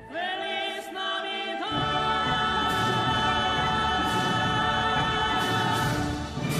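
A choir singing a sustained chord: voices come in together right at the start, more voices join underneath about a second and a half in, and the full chord is held steadily.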